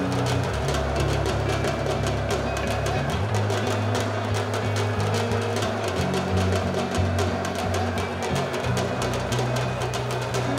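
Bengali dhak drums beaten rapidly with sticks, a dense run of strokes over loud music with a deep bass line.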